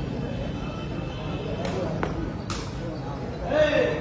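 Sepak takraw ball being kicked: two sharp smacks about half a second apart, about two seconds in, over steady crowd chatter, with a louder shout near the end.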